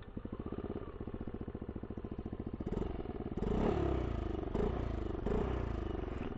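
Yamaha Aerox 155 scooter's single-cylinder engine running through a 3 Tech Ronin Hanzo aftermarket exhaust set to its silent mode. It idles with an even, quick putter, then is revved in a few short throttle blips from about three seconds in.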